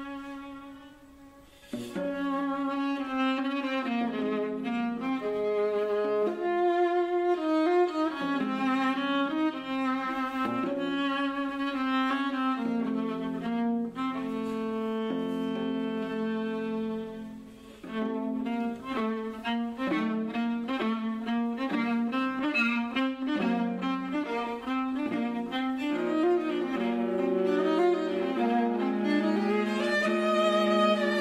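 A duet of a viola and a five-string tenor viola, both bowed, playing two interwoven lines. A held low note fades out about a second and a half in, the pair come back in together, and there is a brief pause a little past the middle before both resume.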